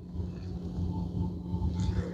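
Room background: a low, uneven rumble under a steady hum, with faint short tones that may be distant background music.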